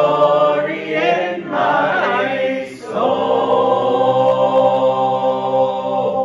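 Small mixed group of men and women singing unaccompanied in close harmony, finishing a phrase and then holding one long final chord from about halfway through.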